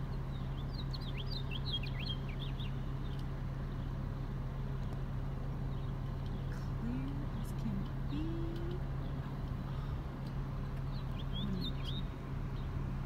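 Small birds chirping: quick clusters of short high chirps in the first few seconds and again near the end, over a steady low hum.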